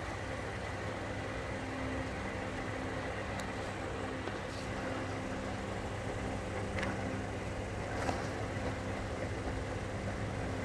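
Steady low mechanical hum over a bed of background noise, with faint steady tones fading in and out and a couple of faint clicks late on.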